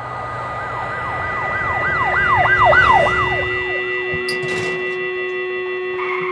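An emergency vehicle siren sweeping up and down about twice a second, swelling and then fading as it passes, over a few steady held tones.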